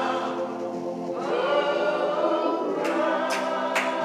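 Gospel singing by a choir or congregation, with held, gliding notes. Near the end, sharp percussive strikes come in about twice a second.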